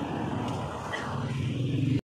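A motor vehicle engine running steadily, a low hum that gets a little louder near the end.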